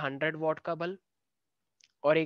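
A man speaking Hindi for about the first second, then the audio cuts off to dead silence, broken only by a faint click near the end.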